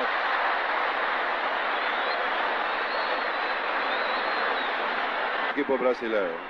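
Dense, steady noise of a packed football-stadium crowd, swelling during a goalmouth scramble, with faint high whistling in it. A commentator's voice comes back near the end.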